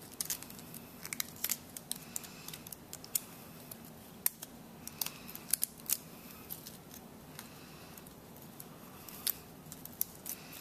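Die-cut cardstock flower petals being curled inward with a stylus and handled: irregular light paper clicks and crackles.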